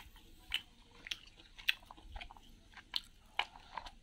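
A man chewing a mouthful of rice and curry close to the microphone, with wet mouth smacks about twice a second.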